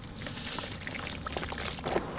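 A wet sand-cement chunk crumbling between the fingers, grit and small pieces trickling and dripping into a basin of water. Hands slosh into the water near the end.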